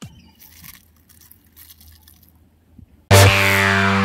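Faint scattered crackles and light clicks of dry paddy seeds being picked up by hand, then loud electronic background music with a deep bass starts suddenly about three seconds in.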